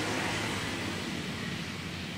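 Steady background noise: an even hiss with no distinct events.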